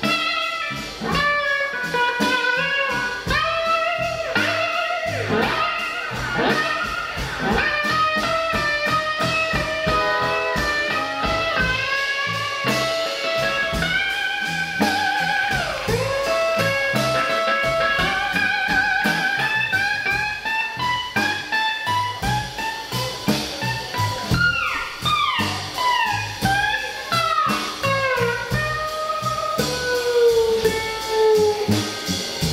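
Live blues band with an electric guitar taking a solo: single-note lines with string bends and wavering vibrato, several quick sliding runs near the end, over drums and bass.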